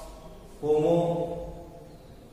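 A man's voice speaking one drawn-out, sing-song phrase that starts about half a second in and trails off.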